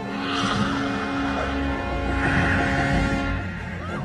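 Horror-film monster's rasping screech, heard twice, over a film score of long held tones.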